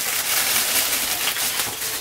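Noisy plastic packaging bag crinkling and rustling steadily as a hair-tool case is worked out of it by hand.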